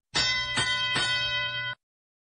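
Arena field sound cue of three ringing bell strikes about half a second apart, marking the start of the driver-controlled period of the robotics match. It cuts off abruptly near the end.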